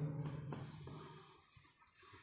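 Chalk writing on a blackboard: faint scratching with a few light taps, after a man's drawn-out word fades away in the first half second.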